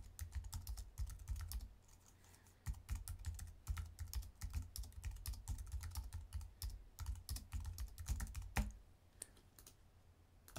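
Typing on a computer keyboard: quick runs of key clicks, with a short pause about two seconds in, thinning out to a few scattered keystrokes near the end.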